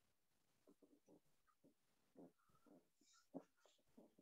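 Near silence: only faint, short, indistinct sounds in the background.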